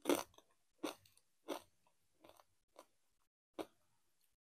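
Doritos tortilla chips being chewed: six crisp crunches about two-thirds of a second apart, the first the loudest.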